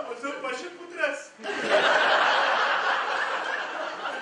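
An actor's line on stage, then about a second and a half in a theatre audience breaks into loud laughter that carries on and slowly eases off.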